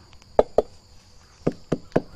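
Five sharp knocks on the trunk of an Aquilaria (agarwood) tree, in two quick groups. The tree is being tapped to listen for a hollow sound, the sign that the agarwood has formed and the tree is ready to harvest.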